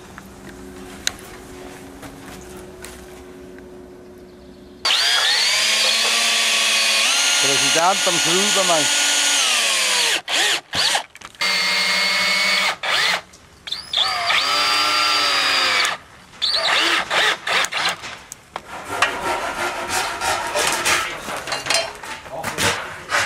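Cordless drill-driver driving wood screws into a timber post. The motor whines loudly in several bursts after a quieter first few seconds, its pitch sagging and rising as each screw bites. Irregular knocks follow near the end.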